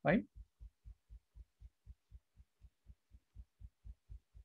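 Faint low thumps repeating evenly, about four a second.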